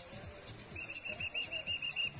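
A whistle trilling: a quick run of short, high, pulsing tones, about seven a second, starting a little under a second in and lasting just over a second. Faint background music with a steady beat runs underneath.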